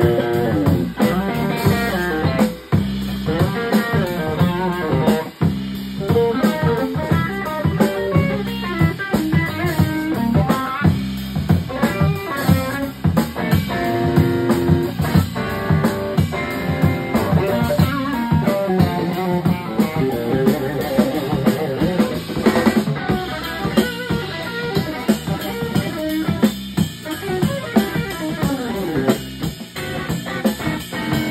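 A live funk band of electric guitar, electric bass and drum kit playing an instrumental groove together, the Strat-style guitar picking busy melodic lines over the bass and drums.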